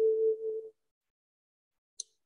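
The tail of a spoken word with a steady electronic tone under it. Both cut off abruptly under a second in, leaving dead silence from gated call audio.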